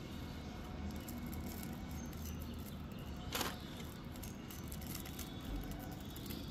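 Fingers picking at a small plastic wrapper around a toy gift, with faint crinkles and one short, louder crackle a little past the middle, over a steady low background rumble.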